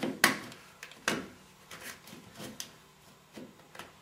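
A paint shield pushed and scraped along the carpet edge under a baseboard: a sharp scrape or knock about a quarter second in, another about a second in, then a few fainter scrapes and ticks.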